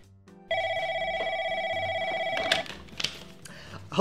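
Landline desk telephone ringing: one warbling electronic ring about two seconds long that cuts off suddenly, followed by a couple of short clicks.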